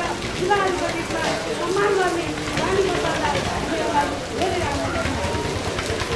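A woman's voice speaking through a handheld microphone, over a steady hiss.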